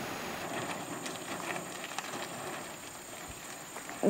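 Faint outdoor background: a steady hiss with a thin, steady high-pitched tone and a few light scattered clicks.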